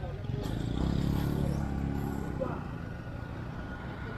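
A motorcycle engine running as it passes on the road, swelling and then fading over about two seconds.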